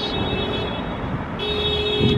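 Street traffic noise, with a pitched beep that repeats about every one and a half seconds; it sounds twice, once at the start and again near the end.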